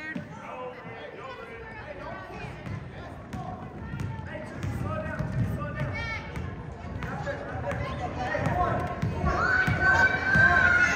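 A basketball dribbled several times on a hardwood gym floor, with the voices of spectators chattering around it in the gym.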